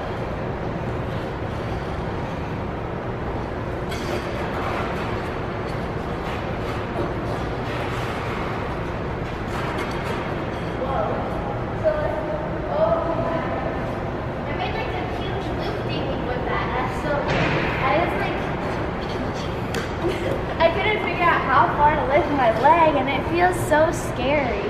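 Steady hum of a large indoor ice rink, with faint voices now and then, and a girl's voice coming in loudly over the last few seconds.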